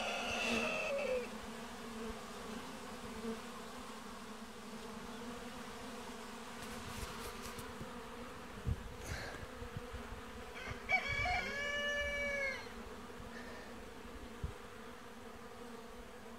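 A steady buzz of many honeybees flying at a hive entrance, unusually heavy flight activity that the beekeeper wonders is stir-craziness after being kept in by monsoon rain. A rooster crows once about eleven seconds in.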